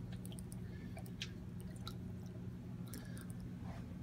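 Faint steady low hum with a scattering of small ticks and water drips as a hand drops ham into an aquarium.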